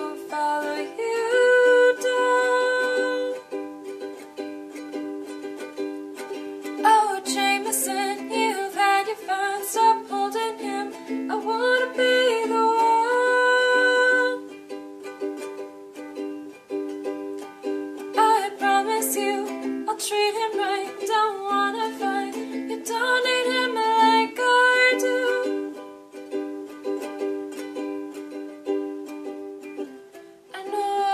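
Ukulele strummed in a steady rhythm through changing chords.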